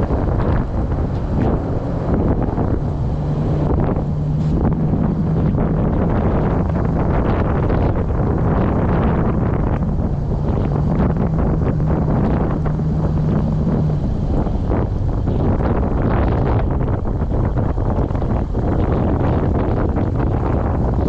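Toyota Land Cruiser FZJ80's inline-six engine running as the truck crawls over a snowy dirt track, with a rumble of wind on the microphone and scattered knocks from the rough ground. The engine settles into a steadier drone twice, a few seconds each time.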